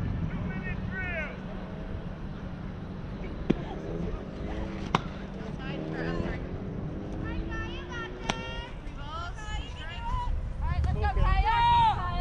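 Players and spectators calling out across a softball field, their voices carrying from a distance, with three sharp smacks of the softball, the loudest about five seconds in.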